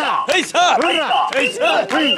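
Mikoshi bearers shouting a rhythmic carrying chant in unison, short calls about three a second, while shouldering the portable shrine.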